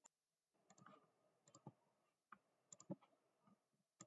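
Faint computer mouse clicks, scattered and several in quick pairs like double-clicks, with soft handling noise between them.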